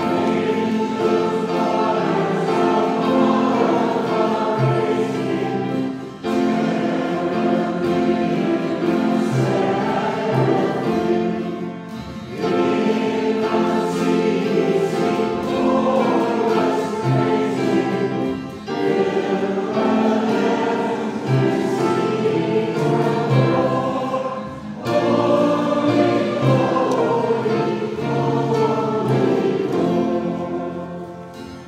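A choir singing a hymn, likely the entrance hymn, in phrases of about six seconds with short breaths between them.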